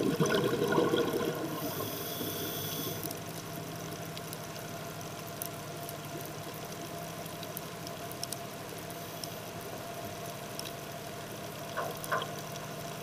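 Live-aboard dive boat's auxiliary engine heard underwater as a steady hum with several held tones. A gush of a scuba diver's exhaled bubbles comes in the first second or so, followed briefly by a high hiss.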